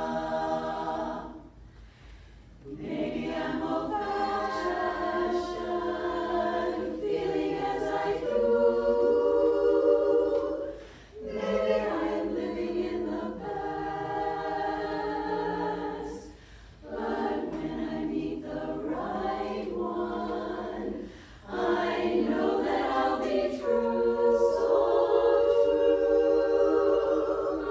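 Women's chorus singing a cappella, holding chords in phrases broken by brief pauses about 2, 11, 16 and 21 seconds in.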